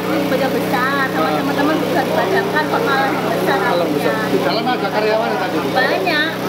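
A woman talking rapidly and animatedly in an interview, over a steady low mechanical hum.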